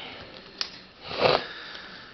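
A person sniffing once, about a second in, over low room noise, with a faint click shortly before.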